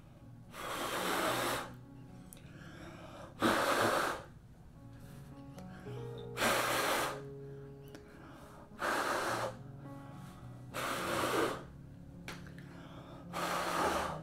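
A person blowing hard by mouth onto wet poured acrylic paint to push it around the canvas: six separate breaths, each about half a second to a second long, roughly every two seconds.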